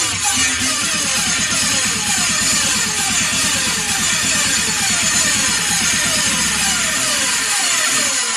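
Electronic dance music from a DJ mix: a synth line slides downward over and over, about twice a second, over a fast pulsing bass. The bass drops out shortly before the end.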